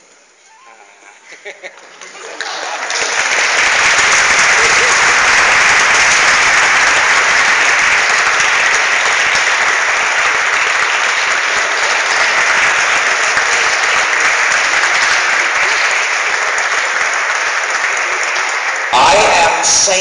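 An audience in a large hall applauding: a few scattered claps at first, swelling about two and a half seconds in into loud, steady applause that lasts until a man's voice comes in near the end.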